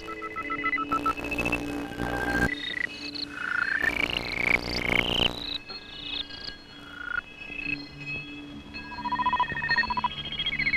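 Electronic synthesizer music: held and warbling tones with sliding pitches, and two long bursts of hiss at about one and four seconds in.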